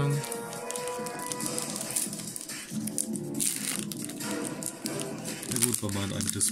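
Background music, with the foil wrapper of a trading-card booster pack crinkling as it is handled and torn open, the crinkling sharpest about halfway through and again near the end.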